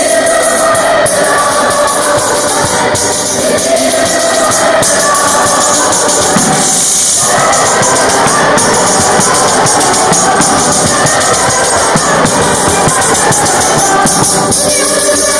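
Choir singing with a large frame tambourine (tamburello) keeping a steady beat. The voices break off briefly about halfway through while the tambourine carries on.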